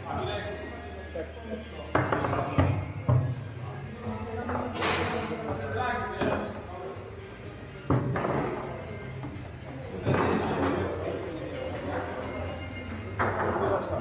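Table-football (foosball) play: the ball being struck by the rod figures and hitting the table walls, with sharp knocks and thuds at irregular intervals, the loudest a cluster about two to three seconds in.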